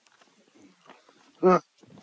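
Speech only: a man says one short word, "Right," about one and a half seconds in, with faint room murmur before it.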